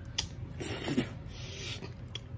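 Close-up eating sounds of crab and rice eaten by hand from a plastic plate: soft rubbing and scraping with a couple of sharp clicks.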